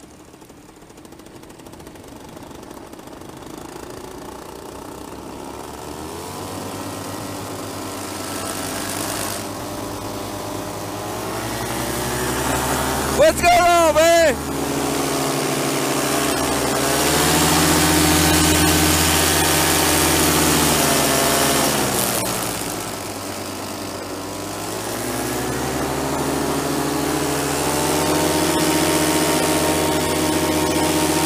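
Paramotor engine and propeller in flight, throttled up slowly from a quiet start, easing off about two-thirds of the way through and then building again. About 13 seconds in there is a brief, loud, wavering voice-like sound.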